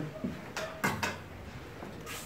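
Masonry trowel scraping up fine cement mortar: two short scrapes about a third of a second apart, roughly half a second to a second in.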